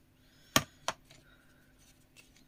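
Two sharp clicks about a third of a second apart, the first louder: a clear acrylic stamping block being handled and set down on the craft mat.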